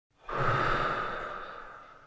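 Film distributor's logo sound effect: a whoosh with a steady high tone in it that starts suddenly and fades away over about a second and a half.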